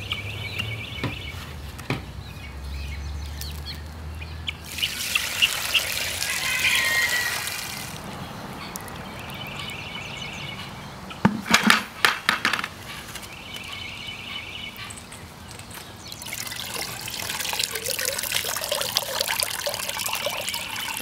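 Fermented cedar-water liquid poured from a plastic bucket through a cloth shirt into another plastic bucket, splashing and trickling as it strains. A few sharp knocks sound around the middle.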